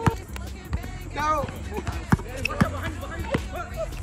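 A basketball bouncing on a hard outdoor court, about five sharp bounces at uneven spacing.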